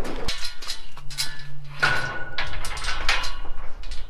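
Steel pipe livestock gates and a stock trailer rattling and clanking in a run of irregular knocks as cows are loaded, with a brief high metallic squeak about two seconds in.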